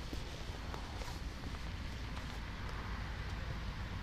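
Steady wind rumble on the microphone, with a few faint clicks.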